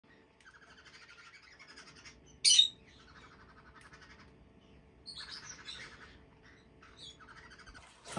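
Pet parrots, a lovebird and green-cheeked conures, chattering and chirping in short runs of calls, with one loud, sharp squawk about two and a half seconds in.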